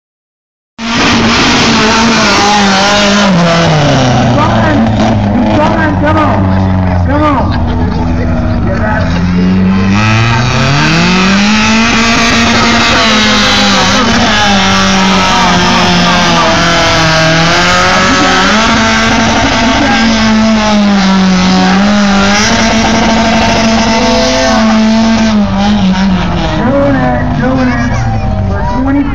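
Race truck's engine running hard at high revs, cutting in suddenly about a second in. Its pitch sinks over several seconds, climbs again, then keeps swinging up and down. Loud throughout.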